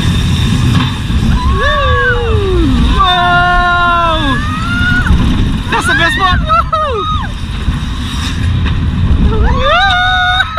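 A wild mouse roller coaster car rumbling over its track, with heavy wind on the microphone. Over it the riders let out four long sliding whoops and cries, the second held for over a second.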